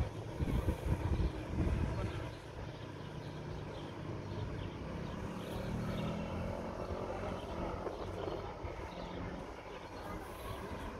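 A motor vehicle's engine running: a low drone that swells through the middle and eases off near the end, with low rumbling bumps in the first two seconds.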